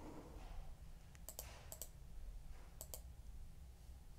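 Faint clicking at a computer as a number in a software dialog is changed: about three quick pairs of short clicks through the middle, over a low steady hum.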